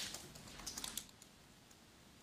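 Faint clicking of a laptop computer keyboard: a short run of keystrokes in the first second.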